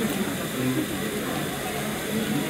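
Muffled, indistinct voices over a steady hiss.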